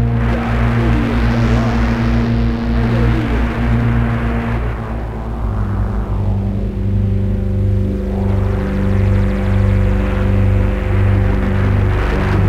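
Ambient electronic synthesizer music: low held drone notes with a slow rhythmic throb in the bass, under a hissing noise wash. About halfway through the wash fades and the held notes move to a new chord.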